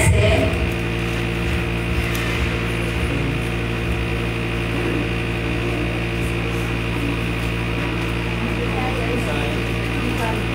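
A steady low hum with several held tones, running evenly and unchanging, like machinery or electrical hum. A brief bit of voice comes right at the start.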